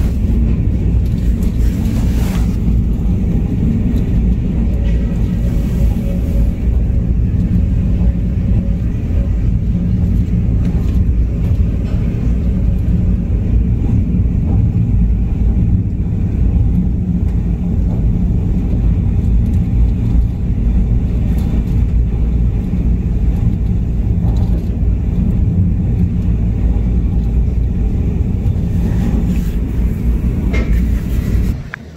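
Tropical-storm wind blowing hard over the microphone: a loud, steady, deep rumble that never lets up.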